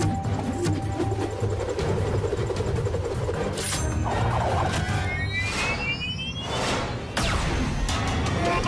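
Cartoon action soundtrack: dramatic background music with sound effects laid over it, several whooshes in the second half and a rising whine just before a blaster shot.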